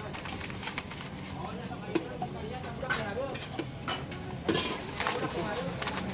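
Brown wrapping paper rustling and being folded around a portion of kupat tahu, with scattered light clicks and knocks of utensils on the counter. A short, loud rustle about four and a half seconds in is the loudest sound.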